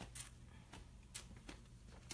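Near silence: room tone with a steady low hum and a few faint short clicks.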